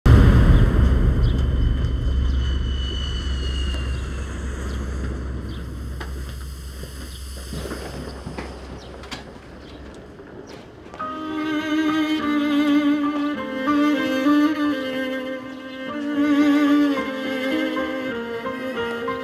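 A deep rumble starts loud and fades away over the first ten seconds. About eleven seconds in, soundtrack music of bowed strings (violin and cello) comes in, with slow, wavering sustained notes.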